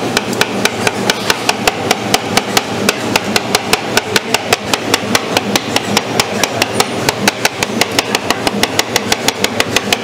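Steel spatulas chopping fruit on the freezing pan of a roll ice cream (tawa ice cream) machine. It is a fast, even run of sharp metal-on-metal taps, about five or six a second, as banana and pineapple are crushed into the ice cream base.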